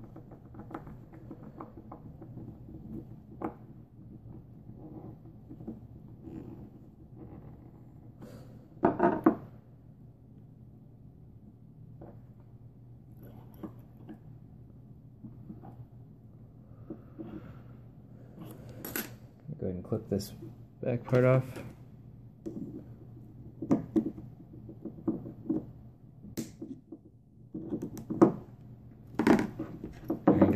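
Small metal clicks and scrapes of a screwdriver working the post screws of a rebuildable dripping atomizer while its coil's wire leads are handled. Several sharper clicks come in the second half.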